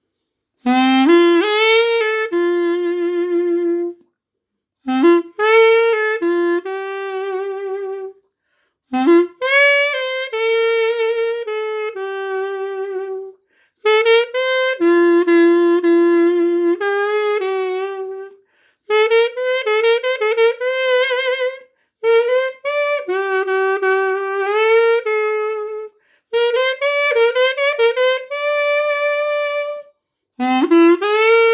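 A Xaphoon, a keyless single-reed pocket sax, played solo: a slow melody in phrases of a few seconds with short breaks between them. Notes are held with a light vibrato, and several phrases open with notes sliding upward.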